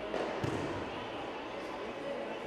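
A single heavy thud, about half a second in, of a judoka's body landing on the tatami mat after a throw, with a softer knock just before it and a short echo from the hall.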